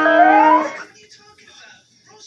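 A man's voice holding one long sung note, its vowel opening partway through, cutting off about a second in. Then quiet room tone.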